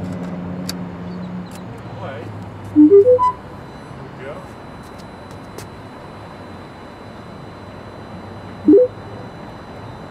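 A few mechanical clicks from the boombox's cassette keys early on. About three seconds in, a rising run of four short electronic beeps; near the end, one quick rising electronic chirp. A low hum is under the first second and a half.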